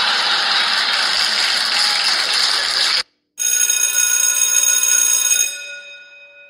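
A loud rushing noise for about three seconds cuts off suddenly. After a brief gap, a bell rings with many steady tones and slowly fades away.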